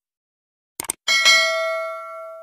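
Subscribe-button animation sound effects: a quick double click, then just after halfway a bright bell ding that rings on and slowly fades.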